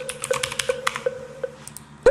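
Typing on a computer keyboard: a quick run of key clicks that thins out after about a second and a half.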